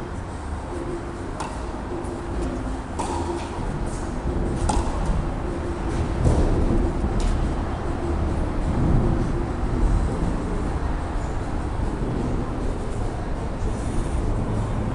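Tennis ball struck back and forth with rackets in a rally on an indoor clay court: about four sharp hits some one and a half to two and a half seconds apart in the first half, over a steady low rumble of the hall.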